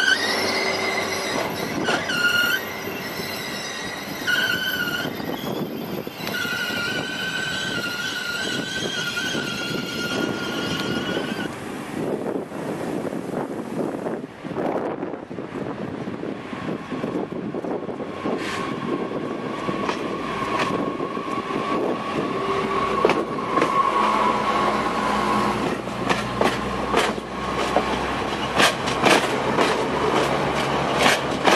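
SNCF AGC diesel railcars. First a train's wheels squeal in high, on-and-off tones as it runs slowly along the platform. Then another train draws near, its engine rumble growing, and it passes with quickening clicks of wheels over rail joints.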